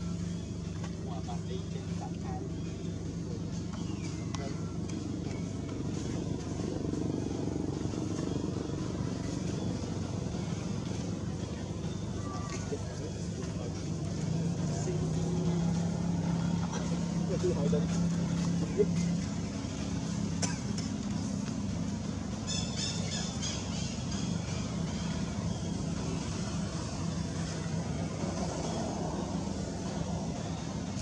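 A motor running steadily with a low drone, swelling slightly in the middle. Near two-thirds of the way through comes a brief run of rapid high-pitched chirps.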